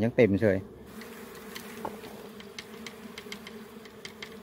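Dwarf honeybees (Apis florea) buzzing around their open comb: a steady, droning hum made of several tones.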